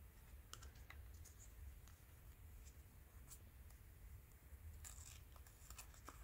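Faint rustling and a few light clicks of stranded embroidery floss being handled on thread drops hung on metal rings, over a low steady hum.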